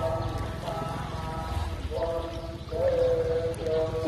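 A voice holding a series of long, steady notes that change pitch in steps, over a low rumble.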